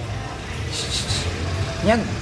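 Steady low rumble of street traffic, with a short hiss about a second in.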